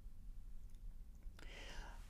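Faint room tone with a steady low hum, and a man drawing a short breath about one and a half seconds in.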